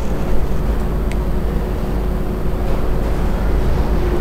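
A steady low rumbling noise with a faint hum over it.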